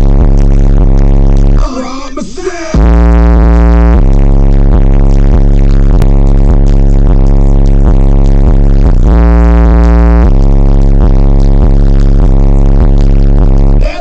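Very loud, bass-heavy music with a deep, steady bass line. About two seconds in, the bass drops out for about a second under a short vocal line.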